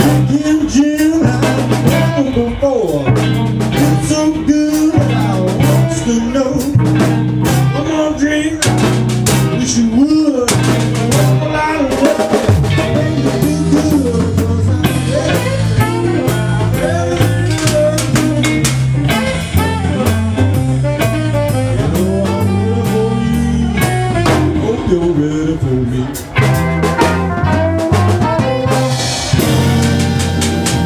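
Live blues band playing: tenor saxophone, electric guitars, electric bass and drum kit, with a repeating bass line under the horn and guitars.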